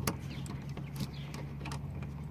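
Light metal clicks and taps of a small brass hook-and-eye latch as the hook is worked into its eye, the sharpest click at the very start and a few more about a second in, over a steady low hum.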